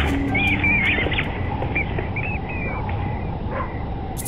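Bats squeaking as a flock flies past: a string of short, high, gliding chirps, thickest in the first couple of seconds and thinning out after, over a steady background.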